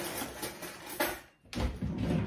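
Scraping of a table knife spreading sauce on a toasted burger bun, with kitchen handling noise and a short knock about a second in.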